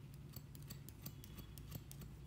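Barber's scissors snipping beard hair held over a comb: a quick run of crisp snips, about five a second.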